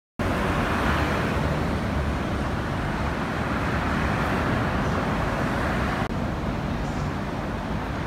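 Steady road-traffic noise, a low rumble with a hiss over it, cutting in abruptly just after the start and easing a little about six seconds in.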